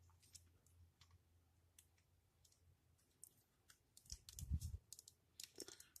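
Near silence with faint scattered clicks of snap-fit plastic model-kit parts being handled and fitted together, and a soft low bump about four to five seconds in.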